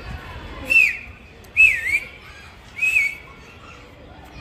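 A pigeon keeper whistling at his flock in flight: three short, loud whistles about a second apart, the middle one dipping in pitch and rising again.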